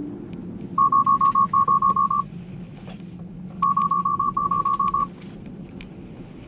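A Tesla's cabin warning chime beeping rapidly at one high pitch, in two bursts of about ten beeps each, a second and a half apart. The alert comes as FSD Beta puts up a red warning for the driver to take control. A steady low road and cabin hum runs underneath.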